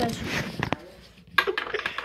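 Electrolux front-loading washing machine door being handled at its hinge: a sharp click, then a quick run of rattling clicks as the door is wobbled, a door that is pretty wobbly.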